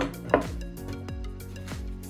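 Soft background music with steady held notes, over a sharp knock about a third of a second in and a few fainter clicks, from small pots and boxes being handled on a table.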